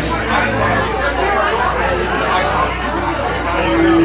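Overlapping chatter of several people talking in a bar, over a steady low hum.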